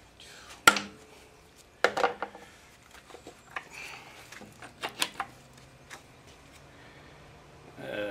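Scattered sharp metallic clinks and knocks as the cylinder head of a 15 hp Johnson outboard is worked loose and lifted off the power head. The loudest knock comes a little under a second in, with a cluster of lighter clinks around five seconds in.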